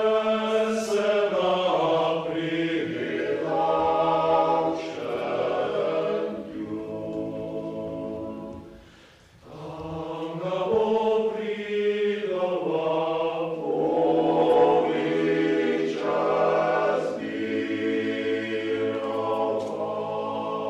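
Male-voice choir singing a Slovenian song in several parts, in two long phrases with a short break about halfway through.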